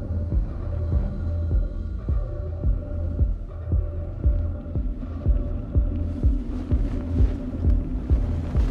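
Film score and sound design: a deep, irregular throbbing pulse over a low sustained hum. A higher rushing layer swells in near the end.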